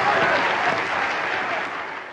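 Audience of delegates applauding, an even clatter of many hands that fades toward the end.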